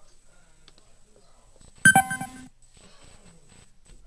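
A single short beep-like chime about two seconds in, sharp at the start and fading within about half a second.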